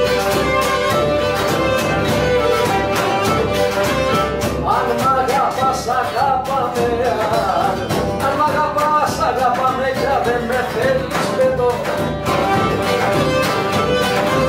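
Cretan lyra music played by a traditional band: the bowed lyra carries a wavering melody over a steady beat, with the melody growing busier from about five seconds in.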